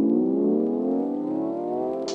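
Synthesizer riser in a music track: a stack of tones gliding slowly and steadily upward in pitch.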